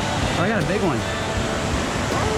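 A background country song with a singing voice, laid over the steady rush of a mountain stream.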